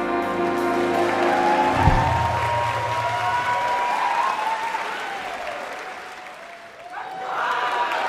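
A jazz big band with vocalists holds a final chord that ends about two seconds in with a last low hit, followed by audience applause and cheering. The applause thins out and then swells again near the end.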